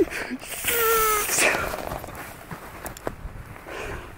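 A man's wordless, drawn-out exclamation over a heavy, excited breath about a second in, then faint rustling and a few light knocks from clothing and a handheld camera being moved.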